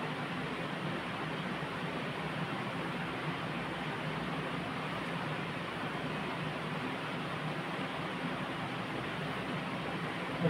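Steady room tone: an even hiss with a faint low hum, unchanging throughout, with no distinct events.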